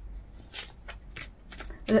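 Playing or oracle cards being handled: a few brief, crisp paper rustles.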